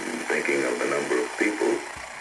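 A man speaking in a CBC radio interview, heard through an analog television set's speaker as the set picks up the FM broadcast, over a steady hiss.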